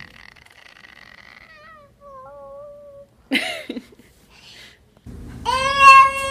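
A toddler squealing in a high, held pitch, then making wavering, whiny vocal sounds and short bursts of voice. Near the end a baby lets out a long, loud, held shout.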